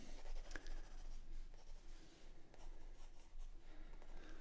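Pencil scratching faintly across drawing paper in short, irregular sketching strokes.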